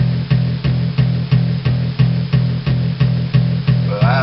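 Instrumental intro of a country song: an acoustic guitar strummed over a bass line, with an even beat of about three strokes a second.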